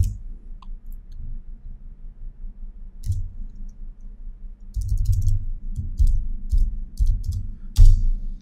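Computer mouse clicking: one click about three seconds in, then a run of clicks in the second half, the loudest near the end, each with a dull low knock.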